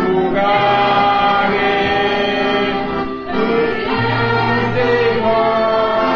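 A group of voices singing a hymn together over a held instrumental accompaniment, with a short dip in the sound about three seconds in.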